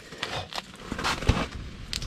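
Irregular scraping and crackling from slushy ice and handling at an ice-fishing hole while a big lake trout is being landed, with a dull thump a little past a second in.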